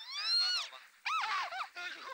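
High-pitched whining cries: a long one that rises and then falls, then, after a short break, quicker cries that arch up and down.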